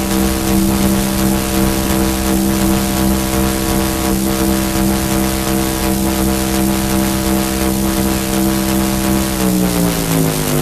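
Electronic music in a techno DJ mix: a sustained, engine-like synthesizer drone, one steady pitched tone with its overtones over a hiss. Near the end the whole drone glides downward in pitch.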